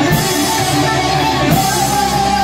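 Heavy metal band playing live, with electric guitars to the fore over bass and drums.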